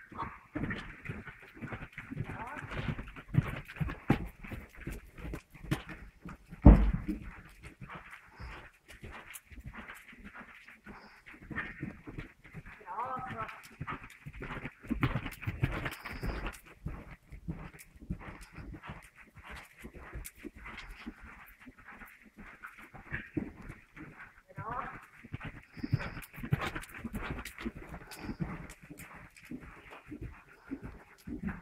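Hoofbeats of a ridden horse on soft indoor arena footing as it goes over cavaletti poles, an uneven run of dull thuds and knocks, with one loud thump about seven seconds in.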